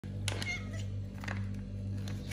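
Domestic cat giving one short meow a moment after the start, over a steady low hum.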